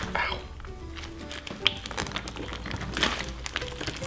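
Pretzel pieces mixed into a lump of slime crunching and cracking as hands squeeze and knead it, in scattered sharp crackles; the slime itself makes no crunch. Background music plays underneath.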